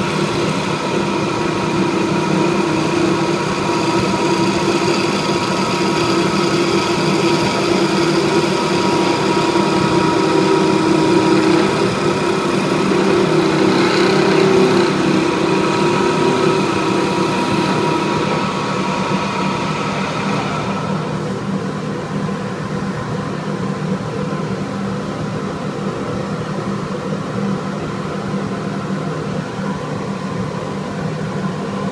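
Wood lathe running with a steady motor hum while a skew chisel planes the spinning chestnut bat blank, giving a continuous cutting hiss. About two-thirds of the way through the cutting stops, leaving only the lathe's hum.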